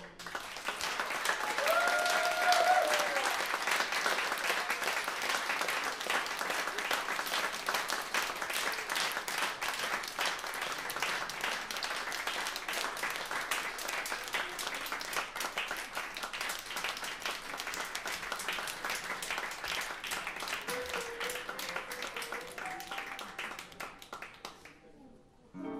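Audience applauding steadily, with a few short cheers about two seconds in. The clapping thins and dies away near the end.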